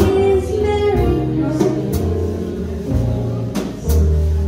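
Live jazz band with a woman's voice, plucked upright bass, keyboard and drum kit: a sung line ends in the first half-second, then bass notes and keyboard carry on with two cymbal hits.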